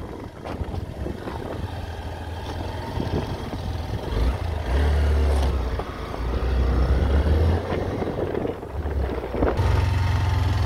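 Motorcycle engine heard from the rider's seat while riding, its low drone swelling and easing as the throttle opens and closes, over a steady haze of road noise.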